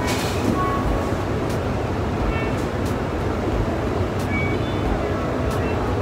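Steady, loud factory-floor machinery noise with a few light clicks, and music mixed in.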